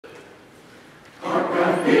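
A mixed church choir of men's and women's voices begins singing together about a second in, after a faint first second.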